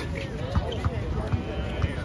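A basketball being dribbled on a hard outdoor court: a few dull bounces, with faint voices of the crowd behind.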